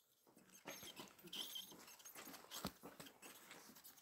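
Near silence with faint rustling and a few soft clicks: the pages of a Bible being leafed through.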